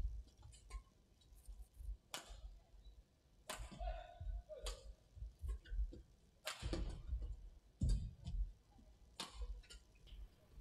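Badminton rally: racket strikes on the shuttlecock come about every second and a half, each a sharp crack, with low thuds of footwork on the court between them.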